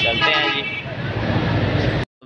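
Busy street traffic noise with a vehicle horn sounding steadily that stops about half a second in, and voices in the background.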